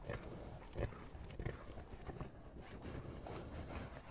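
Fingernails scratching and tapping on a printed metal tin and its rim, close up: a soft scraping rustle with irregular small clicks, the sharpest about a second in.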